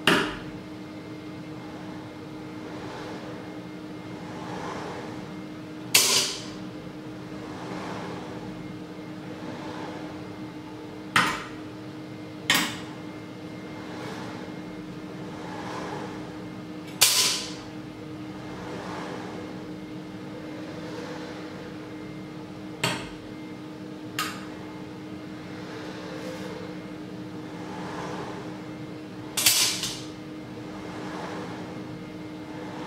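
Steel table knives clacking against metal as a robot arm's electromagnet picks them up and drops them into a steel cutlery holder: about eight sharp metallic clacks, each ringing briefly, spaced a few seconds apart. A steady electrical hum runs underneath.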